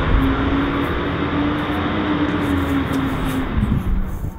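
Steady rushing noise of vehicle traffic, with a faint hum that rises slowly in pitch and stops shortly before the sound cuts off at the end.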